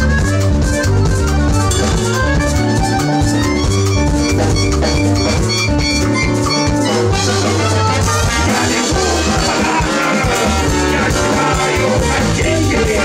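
Live band playing an instrumental passage with no singing: drum kit and hand drums keeping a steady beat under saxophone, trombone, accordion and guitar. The arrangement shifts about seven seconds in.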